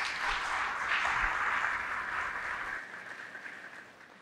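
A seated audience applauding, the clapping starting together and dying away toward the end.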